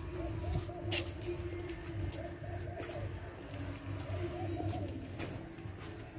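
A dove cooing in short phrases of about four notes, repeated every couple of seconds, over a steady low hum.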